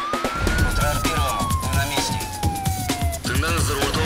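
Title theme music with a heavy beat and a siren sound effect: one wail that rises in the first second, then glides slowly down until about three seconds in.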